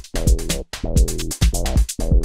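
Electronic house-style track playing at about 130 BPM: a drum-machine kick on every beat, with crisp hi-hat ticks between the kicks and a filtered, sustained synth part underneath.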